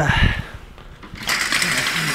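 Office window blind being worked by hand, a steady noise starting just over a second in, after a short spoken 'uh'.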